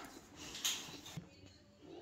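A short, faint rustle about half a second in and a single light click, from a cardboard toy box being handled.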